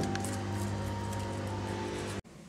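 Background music: soft, sustained notes held steadily.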